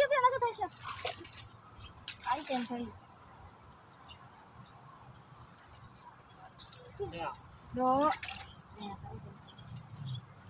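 Short bursts of people's voices, with a faint steady rush of river water underneath and a few brief rustles between.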